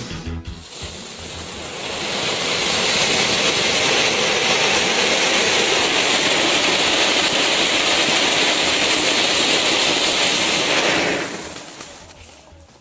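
Flower-pot fountain firework (blazing pot) burning with a steady loud hiss. The hiss builds over the first two seconds, holds, and dies away about eleven seconds in. The end of a music track is heard at the very start.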